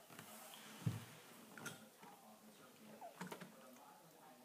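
A banana chip being chewed: a few faint crunchy clicks, with a soft thump about a second in.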